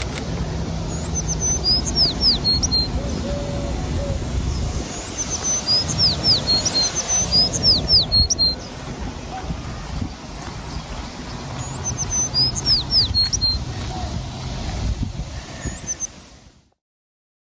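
A songbird singing three phrases of high, quick, falling whistled notes, each a few seconds apart, over a low rumble and a steady high hiss.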